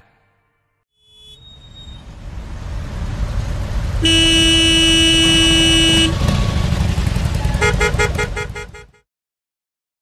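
Low rumble of a city bus and traffic rising in, then a vehicle horn sounding one steady note for about two seconds. Near the end comes a rapid series of short pulsing beeps, and the sound cuts off suddenly.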